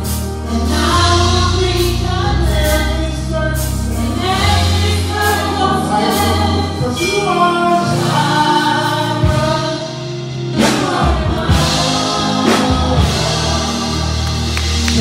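Live gospel worship music: a lead singer and backing singers singing over a band with bass and drums, with cymbal hits through the song.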